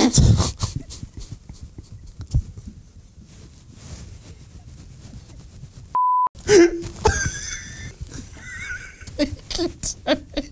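A man laughing helplessly: a loud burst at first, then breathless, wheezing laughter. About six seconds in, a short steady test-tone beep cuts in over the laughter, which then carries on in high, squeaky bursts.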